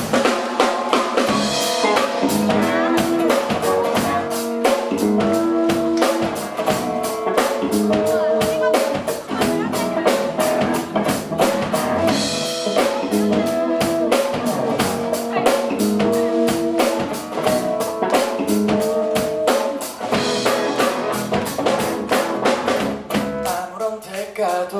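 Live rock band playing the instrumental intro of a song: a drum kit keeps a steady, even beat under strummed acoustic guitar, electric guitar and electric bass repeating a chord pattern.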